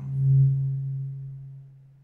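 A low, steady humming tone with faint overtones swells quickly and then fades away over about two seconds.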